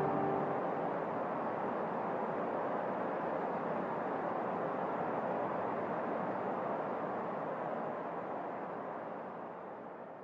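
A steady, even rushing noise with no pitch. It holds level, then fades out over the last few seconds. The last piano notes die away at its very start.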